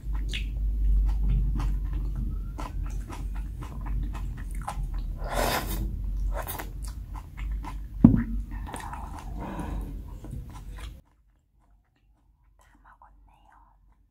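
Close-miked eating sounds of black-bean instant noodles (jjajang ramyeon): wet chewing and mouth smacks, with a couple of longer slurps from the tilted plate and a sharp knock about eight seconds in. The sound stops abruptly about eleven seconds in.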